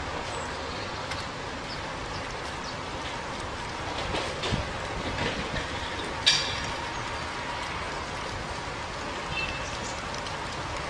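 Steady background hiss with a few light clicks, then one sharp knock about six seconds in.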